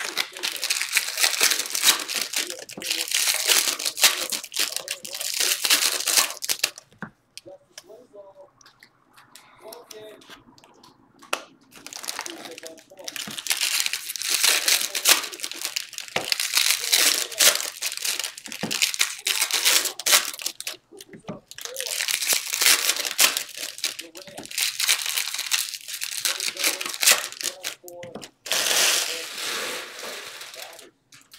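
Foil wrappers of trading-card packs crinkling and tearing as they are opened by hand, in long bursts of several seconds, with a quieter lull about a quarter of the way in.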